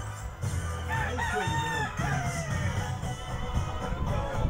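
A rooster crows once, one long call starting about a second in that rises and then falls away, over background music with a steady bass.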